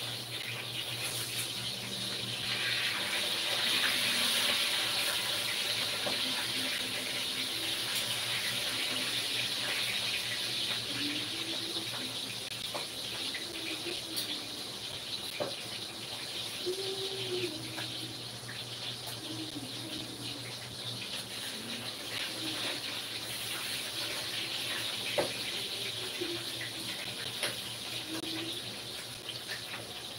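Steady hissing rush like water running from a tap, loudest a few seconds in, over a low steady hum.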